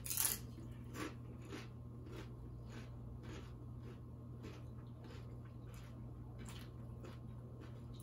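Faint crunching of tortilla chips being chewed: a run of short crunches about two a second, the loudest right at the start.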